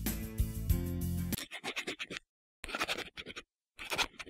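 Background music that cuts off about a second and a half in, followed by three short spells of a felt-tip marker scratching across a drawing surface as writing is drawn, with gaps of silence between them.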